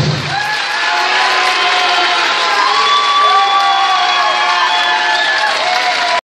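The music cuts off about half a second in. An audience then cheers and whoops with high, drawn-out shouts over applause.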